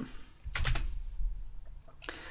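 A few quick computer keyboard keystrokes, clustered about half a second in, with a fainter click just after a second.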